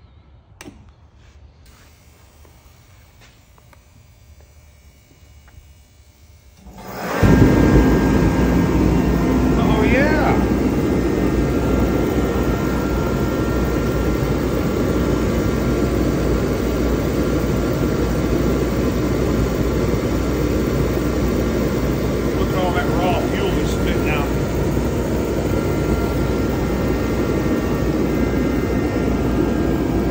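Mr. Heater Contractor Series 125,000 BTU/hr forced-air torpedo heater switched on: a couple of clicks, then about seven seconds in its fan and burner start abruptly and run steadily and loud. It fires and stays lit after its flame-sensing photo eye was cleaned.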